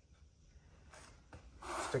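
Mostly quiet room tone with faint handling noise, then a short rubbing noise near the end as a man begins to speak.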